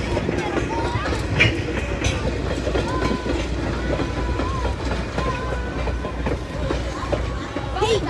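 Passenger coaches of a steam excursion train rolling past at a grade crossing: a steady rumble of steel wheels on the rails.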